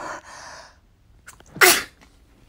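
A person sneezing once, about one and a half seconds in, after a noisy intake of breath.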